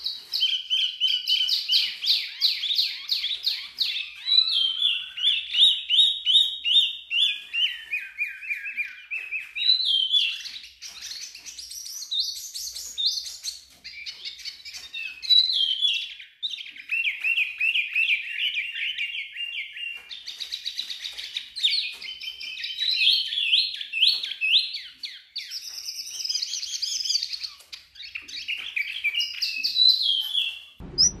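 Caged wambi mini songbird singing a long, varied run of rapid high trills and chirps, with only brief pauses.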